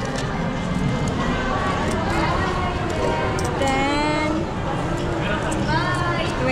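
Shopping-mall ambience: a steady murmur of voices with background music. In the middle a voice holds drawn-out, gliding notes.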